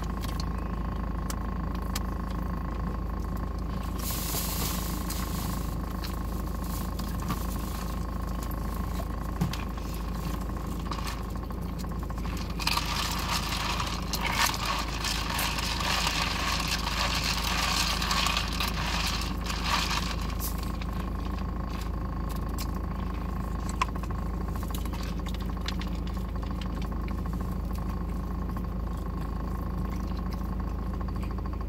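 Steady low hum inside a parked car's cabin, with scattered small clicks and crackles of food and packaging being handled. A louder rushing noise swells from about twelve to twenty seconds in.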